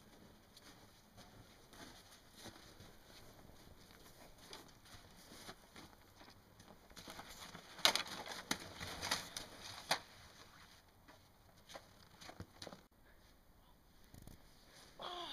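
Scuffling and footsteps on packed snow, a run of soft crunches, with a cluster of louder crunches and knocks about eight to ten seconds in as two people grapple.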